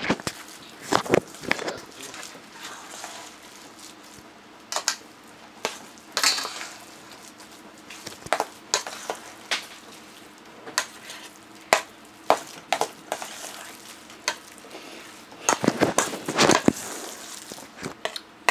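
A metal spoon stirring mashed sweet potato and potato in a stainless steel bowl, making irregular scrapes and clinks against the bowl. The strokes come thickest near the end.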